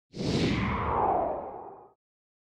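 Whoosh sound effect for an animated logo reveal: one sweep that falls in pitch as it fades away.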